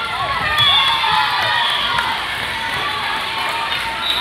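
Crowd of spectators and youth players cheering and shouting as a volleyball point is won, many high voices rising and falling over one another. A shrill held note rings out about half a second in.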